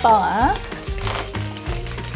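Background music playing over the faint sizzle of mackerel fillets frying skin-down in a pan on low heat. A short gliding voice sound comes in the first half-second.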